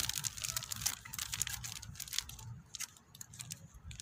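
Crinkling and crackling of a plastic bait packet being handled, the crackles dense for about the first two seconds, then sparser.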